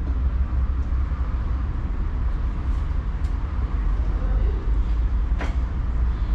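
Wind buffeting the microphone outdoors: a steady, uneven low rumble with a faint hiss above it. A single short click comes about five and a half seconds in.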